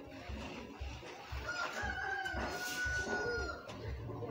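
A rooster crowing: one long, drawn-out crow held on a steady pitch, starting about a second and a half in and ending shortly before the close.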